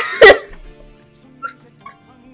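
A sudden loud burst of laughter from a teenage girl about a quarter of a second in, then a couple of faint stifled giggles over quiet music with held notes.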